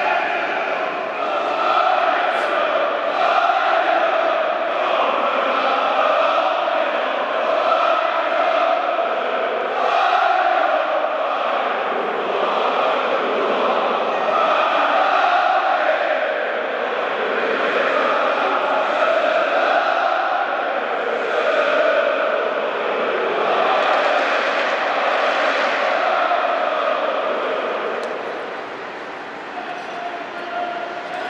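A large stadium crowd of football supporters chanting in unison, the chant swelling and falling in repeated phrases every couple of seconds and easing off near the end.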